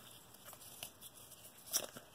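Cardboard trading cards being shuffled through by hand: a faint rustle of card stock sliding, with a short, sharper flick of card against card near the end.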